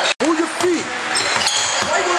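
Live sound of a basketball game in a large gymnasium: the ball bouncing on the hardwood court amid players' and spectators' voices and general crowd noise. The sound cuts out completely for an instant just after the start.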